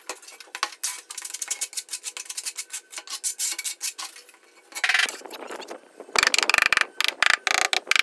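Notched steel trowel scraping tile adhesive out of a metal tub and spreading it on the back of a ceramic tile: quick gritty scraping strokes, louder in the last couple of seconds.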